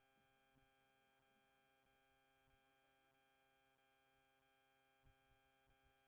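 Near silence: only a very faint, steady electrical mains hum.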